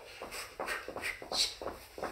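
Two people running in place doing high knees on a carpeted floor: quick, soft footfalls, about four a second.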